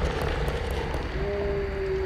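A low, steady rumbling drone, joined about a second in by a single held tone: an eerie, unexplained sound.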